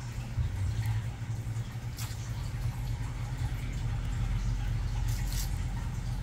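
Nail nippers snipping at the side edge of a thickened toenail: a few short, sharp clicks, one about two seconds in and a couple more around five seconds, over a steady low hum.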